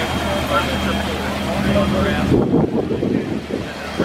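A 1955 Chevrolet's engine running at a low idle as the car rolls slowly past, its low hum dropping away a bit over halfway in as the car moves off. People's voices carry in the background.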